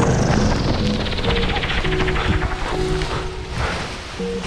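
Background music over a paramotor's engine and rushing noise during landing, the high part of the noise falling steadily in pitch and the whole easing off toward the end as the wing comes down.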